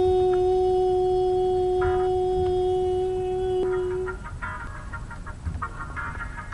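A woman's voice holding one long sung note that stays at a steady pitch and stops about four seconds in. After it, faint, choppy music-like sounds follow.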